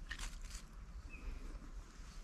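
A knife blade shaving a wooden stick: one short scrape near the start, then faint quiet working. A faint short chirp sounds about a second in.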